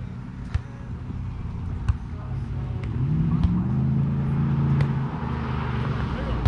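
A car engine grows louder and rises in pitch about two seconds in, then runs steadily to the end, as a car drives past. Over it come several sharp slaps of a volleyball being hit.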